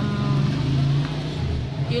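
Motor vehicle engine running with a steady low hum, loudest in the first second.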